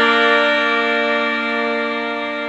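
Instrumental music from a Saraiki folk song with no singing: a single chord held steady, getting slightly quieter.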